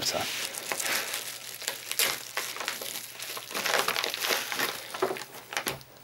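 Plastic bubble wrap crinkling and rustling as it is handled and pulled off a graphics card's packaging, a dense run of small crackles.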